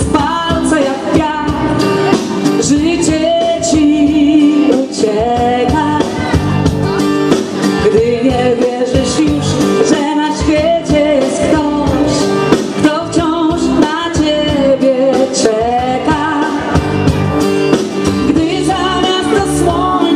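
A woman singing a melodic song with vibrato into a microphone over amplified backing music with a steady beat, heard through stage loudspeakers.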